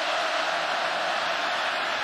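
Steady crowd noise in a football stadium: an even wash of sound from the stands, with no single voice standing out.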